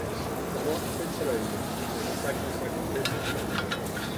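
A spatula scraping melted raclette cheese from a hot metal pan onto a plate, with a few short scrapes in the second half, over a steady hiss and murmur of voices.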